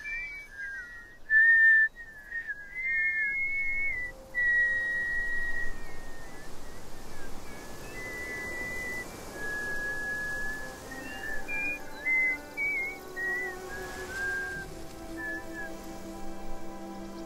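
Children whistling by mouth, wavering high notes, two at once at first and then mostly one at a time: whistling for a wind to sail by. Soft music with sustained low notes comes in under the whistling in the second half and grows louder near the end.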